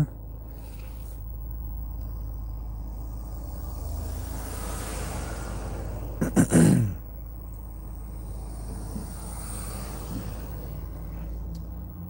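A car passing close by, its tyre and engine noise swelling and then fading over a few seconds, over a steady low hum heard from inside the parked, idling car. A short bit of voice breaks in about six seconds in.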